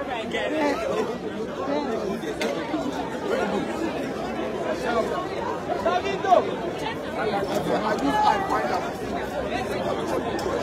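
A crowd of people talking over one another: overlapping chatter of many voices, with no one voice standing out.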